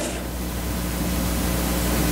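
Steady hiss with a faint low hum: the room's background noise, with no other sound.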